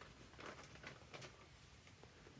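Near silence with faint rustling and a few light clicks from a stitching project being handled and packed into a bag.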